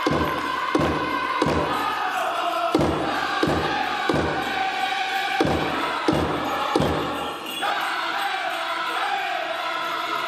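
Powwow drum group singing a chicken dance song in chant, with the big drum struck in three sets of three heavy beats, each set followed by a short pause. The drumming stops about three quarters of the way through while the singing carries on.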